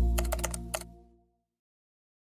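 Computer keyboard typing sound effect: about six quick keystroke clicks in the first second. Under them, a low bass note from the intro music fades out.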